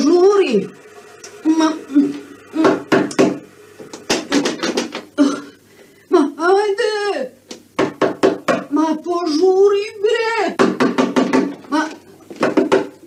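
People talking in raised voices, with several sharp knocks in between.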